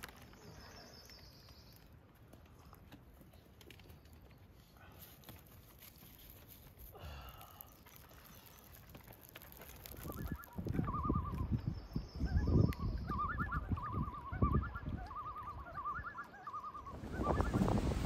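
A bird calling in a quick series of short, repeated calls from about ten seconds in, over a low rumble of wind on the microphone.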